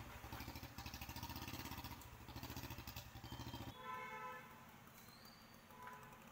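Faint motorcycle engine idling with a quick, even putter that stops abruptly a little under four seconds in. A brief horn honk follows.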